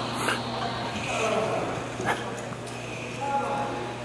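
Ambient noise of an indoor climbing gym: faint distant voices over a steady low hum, with two light knocks, one just after the start and one about halfway through.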